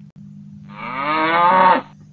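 A cow mooing once, a call of about a second that rises in pitch and cuts off sharply. It is laid in as a sound effect.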